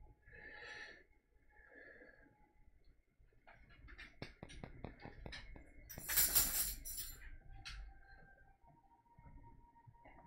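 A pet's chompy mouth sounds: a run of quick clicks about halfway in, then a loud rush of breath lasting about a second, followed by a few more clicks.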